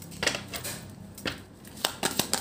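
A deck of Lenormand cards being shuffled by hand: a few short papery swishes and flicks as the cards slide against each other, about three in two seconds.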